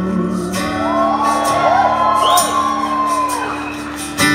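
Live band playing on between sung lines, an acoustic-guitar chord ringing, while audience members whoop and whistle over the music.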